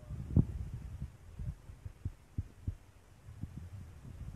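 Low knocks and bumps of the recording camera being handled and brushed against clothing, with the loudest knock about half a second in and several softer ones after.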